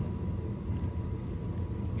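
Steady low background hum with a faint hiss and a thin steady tone. There are no distinct clicks or handling knocks.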